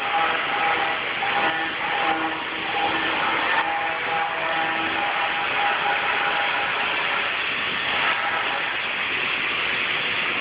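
Steady, loud machinery noise in a granite-cutting shop: a continuous hiss with a faint whine that comes and goes.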